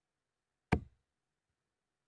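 A steel-tip dart striking a Winmau bristle dartboard: one sharp knock a little under a second in.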